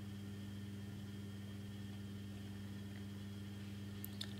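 Steady low electrical hum with a few evenly spaced overtones and faint hiss, unchanging throughout: background room tone of the recording.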